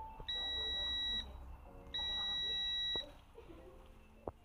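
Digital multimeter's continuity beeper sounding twice, each a steady high beep about a second long, as the jet ski switch's button is pressed and its contacts close.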